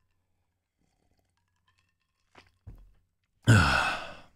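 A man drinking, with faint swallowing sounds, then a short, loud breathy sigh about three and a half seconds in, fading within half a second.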